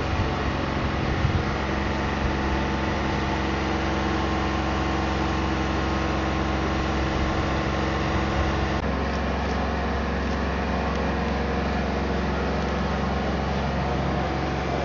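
Boom lift's engine running steadily, a low even drone with several steady tones that shifts slightly about nine seconds in.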